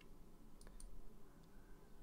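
A few faint sharp clicks a little past halfway through, over quiet room tone with a faint steady low hum.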